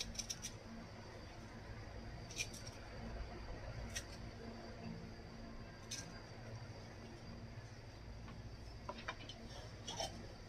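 A kitchen knife slicing a fresh bamboo shoot into thin strips: faint scattered cutting clicks, a second or two apart, over a low steady background hum.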